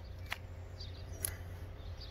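Quiet outdoor background with a steady low rumble and two faint ticks, one about a third of a second in and one just past the middle.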